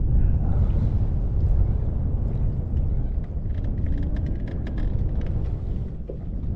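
Wind buffeting the microphone over choppy lake water, a steady low rumble, with a few faint ticks past the middle.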